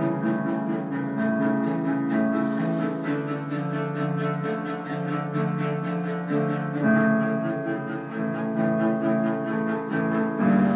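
Cello bowed in a slow melody of long held notes, changing about once a second, with a quick, even pulse of accompaniment beneath it.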